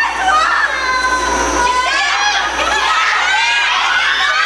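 Concert audience screaming and cheering loudly, many high-pitched voices overlapping in long rising and falling cries.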